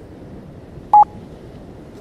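A single short electronic beep, one steady tone lasting a fraction of a second, about a second in, over a faint low rushing background.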